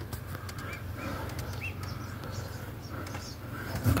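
Tomato plants rustling and clicking as they are handled, over a steady low hum, with three faint short bird chirps in the first two seconds.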